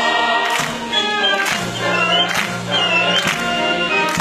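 Operatic ensemble of solo singers, chorus and symphony orchestra performing, with a high soprano line wavering on top. Sharp, evenly spaced hits, like hand clapping on the beat, run through the music.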